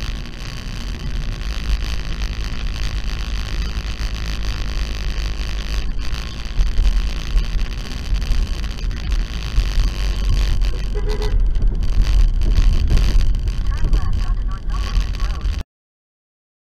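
Car interior road and engine noise picked up by a dashcam microphone while driving: a steady low rumble that cuts off suddenly near the end.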